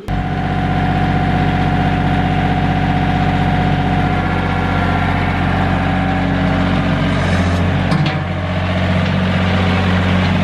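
Compact John Deere tractor with a front loader, its engine running steadily close by. Its note dips briefly about eight seconds in, then steadies again.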